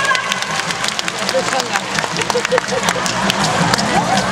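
A show presenter talking in Chinese, over audience noise with scattered sharp claps.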